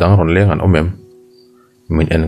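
A narrator's voice reading a story aloud in Mizo. It breaks off about a second in, leaving only a faint steady low tone for nearly a second, then the reading resumes near the end.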